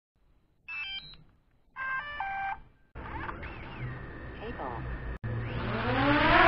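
Intro sound effects for a logo animation: two short runs of stepped electronic beeps, then a noisier stretch with sliding tones that cuts out briefly about five seconds in, followed by a rising swell.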